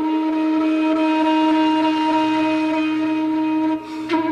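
Indian flute music: one long held flute note, steady in pitch, over a low drone that comes in about a second in. The note breaks off just before the end.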